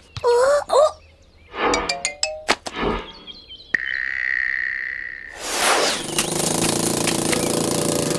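Cartoon sound effects: a short squeaky character vocal at the start, then a quick run of splats as ice-cream blobs hit the ground. A single held whistle-like tone follows, and from about five and a half seconds in there is a long, loud rushing noise.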